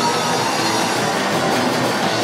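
Live rock band playing loud: distorted electric guitars and drums in a dense, continuous wall of sound.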